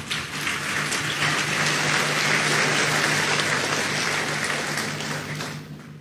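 Audience applauding, swelling over the first couple of seconds and dying away near the end.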